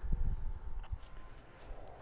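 A few faint knocks over a low rumble: a handheld radio being set down on a table and handled.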